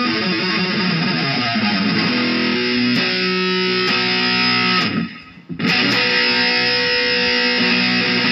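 Electric guitar played solo, ringing held notes and chords. The playing breaks off for about half a second a little past the middle, then rings on.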